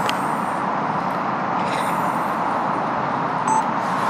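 Steady outdoor street background noise with traffic going by, and a short beep near the end.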